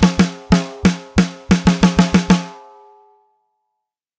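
Sampled snare drum from the SPL DrumXchanger plug-in, triggered by a practice-pad recording: about a dozen ringing snare strokes in an uneven pattern, quickening into a fast run near two seconds in, the last stroke ringing out and dying away about three seconds in.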